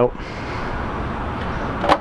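Steady even background noise with no distinct pitch, with one short sharp click near the end.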